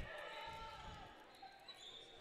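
Faint gymnasium sound of a volleyball rally in play, between bursts of commentary.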